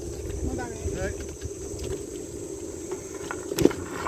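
Steady wind and rolling noise from a bicycle ridden along a concrete path, heard from a handlebar-mounted camera, with one sharp knock near the end.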